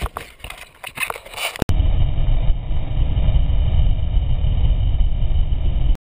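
A few clicks and rustles, then a sudden cut to a loud, steady wind rumble buffeting the camera microphone.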